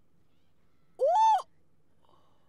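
A woman's short high-pitched vocal exclamation, a single 'ooh'-like syllable of about half a second, rising in pitch and then levelling off before it stops.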